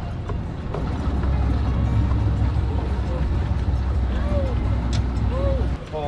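Low steady rumble of a boat's Mercury outboard motor running. It swells about a second in and stops suddenly near the end.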